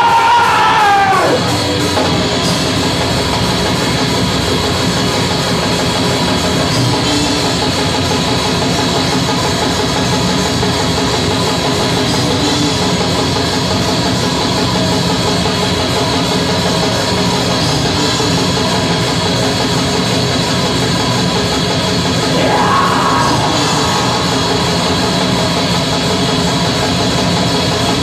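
A black metal band playing live, with distorted electric guitars, bass and a fast drum kit in a dense, continuous wall of sound. A screamed vocal rises and falls over the top in the first second or so.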